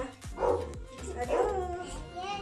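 Background music with a steady bass line, over which a dog barks in short calls about once a second.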